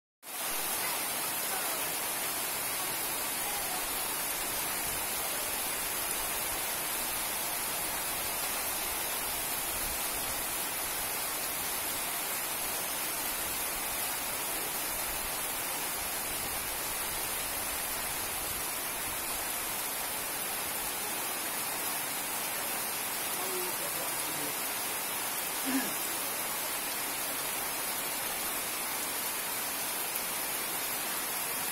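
Heavy rain falling steadily onto puddled, waterlogged ground, an unbroken hiss.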